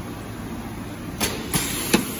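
High-frequency plastic welding machine running: a steady mechanical hum, with three sharp clacks in the second half, the last the loudest.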